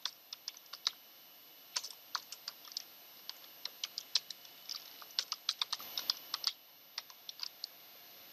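Typing on a computer keyboard: irregular runs of short, sharp keystroke clicks with brief pauses between them.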